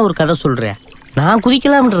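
Speech: a man talking in Tamil, two phrases with a pause of about half a second between them.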